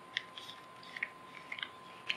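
Plastic wrapper of a single-use toilet kit being torn open at its notch and the folded contents slid out: faint crinkling with a few small clicks.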